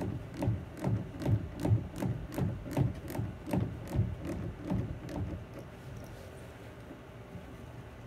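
Hand ratchet with a 7 mm socket tightening a worm-gear hose clamp: a steady run of clicking strokes, about two to three a second, that stops about five seconds in.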